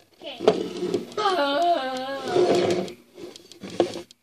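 A person's voice making a long, wavering, wordless growl, starting about a second in and lasting nearly two seconds, while the plastic lid of a small snail tank clicks as it is lifted off.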